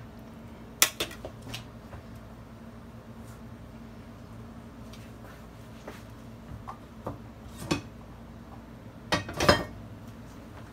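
Scattered clinks and knocks of a metal knife and utensils set down and handled on a metal baking sheet: a few about a second in, a couple more later, and the loudest cluster near the end. A faint steady low hum runs underneath.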